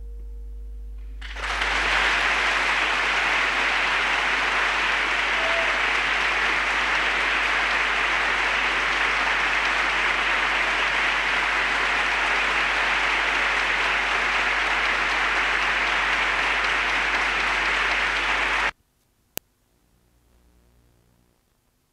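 Audience applauding steadily at the close of a solo piano piece, the last piano tone fading out in the first second as the clapping starts. The applause cuts off abruptly near the end where the recording breaks off.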